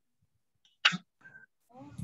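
One short, sharp burst of noise about a second in, followed by a brief faint tone and then children's voices starting near the end.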